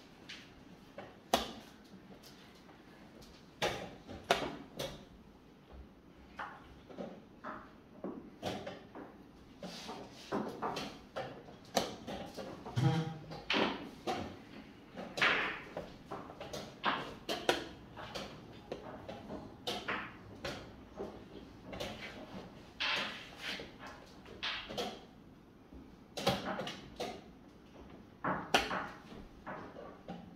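Wooden chess pieces set down on a board and chess clock buttons pressed in a blitz game: a string of irregular sharp knocks and clicks, often in quick clusters.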